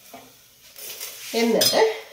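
A spatula stirring and clinking in a frying pan on the stove, with light sizzling. About two-thirds of the way through, a woman's voice comes in and is the loudest sound.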